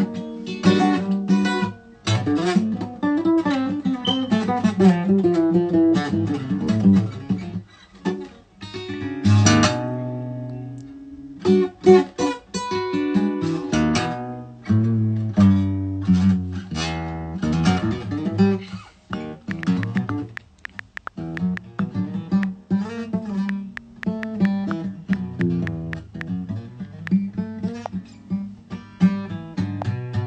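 Acoustic guitar played solo, single picked notes and strummed chords ringing out as a melody is worked out, with a couple of brief pauses between phrases.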